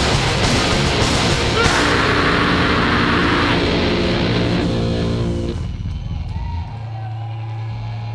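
Heavy metal band playing live and loud through a PA, with distorted guitars, drums and cymbals. The song stops about five and a half seconds in, leaving a low held note ringing from the amplifiers.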